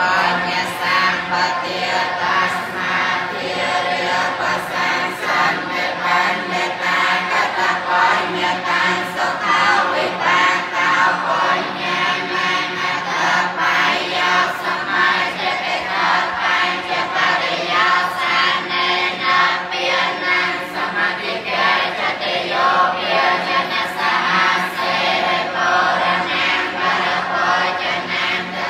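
A group of voices chanting together, continuous and without pauses, over a steady low drone.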